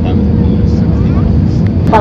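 Airbus A320 cabin noise on approach: a loud, steady low rumble of engines and airflow heard from a seat by the wing.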